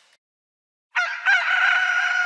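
Rooster crowing a cock-a-doodle-doo, starting about a second in: a few short notes leading into one long held note.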